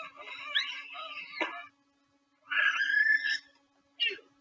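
A person's voice in high-pitched shrieks and squeals: a jumble of cries with pitch glides over the first second and a half. After a short silence comes one loud, slightly rising shriek.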